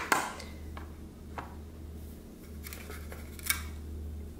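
Paint-loaded fork tapping on an upside-down paper plate, printing paint dabs: a few light, scattered taps, the first the loudest. A low steady hum runs underneath.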